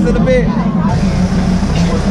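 A train's engine running with a steady low drone as it moves slowly, with people's voices and chatter around it.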